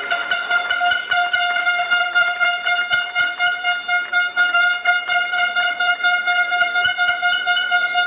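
A handheld air horn held in one long steady blast, cutting off near the end, over rapid clapping.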